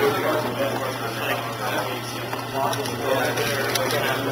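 Indistinct voices talking in the background of a room, over a steady low hum.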